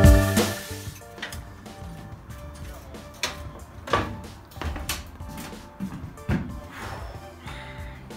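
Background music fading out in the first second, then scattered knocks and thumps of boxes and goods being handled in the metal cargo box of a moving truck.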